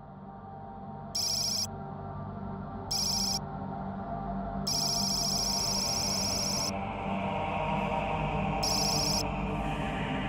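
Sci-fi computer-interface sound effects: four bursts of rapid, high electronic warbling bleeps, the longest about two seconds, over a low dark ambient music drone that fades in and swells.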